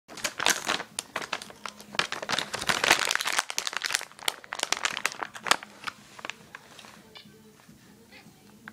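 Crinkly plastic cat-treat bag being rustled and handled in quick bursts, thinning out to a few faint crackles after about six seconds.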